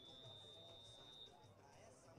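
A single steady high-pitched whistle blast held for about a second and a half, faint over a low crowd murmur, in an otherwise near-silent stretch.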